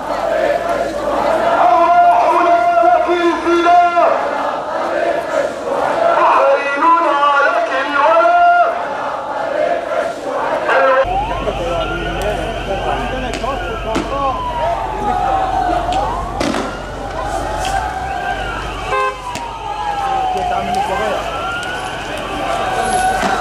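A crowd of marchers chanting slogans in unison, with rhythmic pauses between phrases. About halfway through the sound cuts to a police siren wailing in slow rising and falling sweeps over a low rumble, with a single sharp bang partway through.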